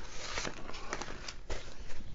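Rustling and crinkling of a rolled diamond-painting canvas and its paper covering being handled, with a few soft clicks.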